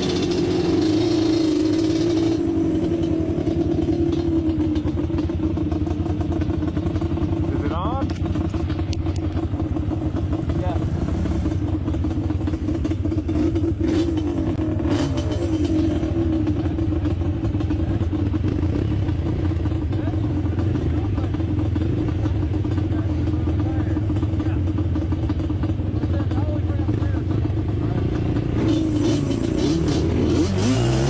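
Yamaha Banshee two-stroke parallel-twin engine running at a fairly steady pitch under way, with a couple of brief rising revs around a third and halfway through.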